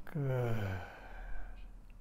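A person's audible sigh: one voiced out-breath that falls in pitch over under a second, trailing off breathily.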